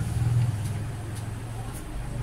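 Low steady hum of a running motor, easing off slightly after about half a second.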